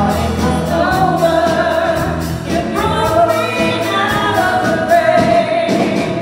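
Live worship song: a lead vocalist singing long held notes over acoustic guitar and band accompaniment.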